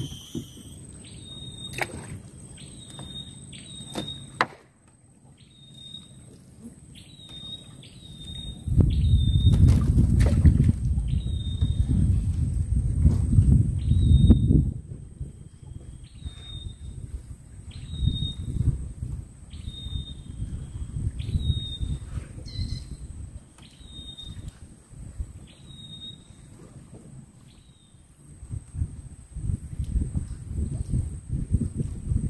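Outdoor ambience on open water: short high chirps repeat roughly once a second, over a low, gusty rumble like wind buffeting the microphone. The rumble is loudest from about a third to halfway through, then eases off.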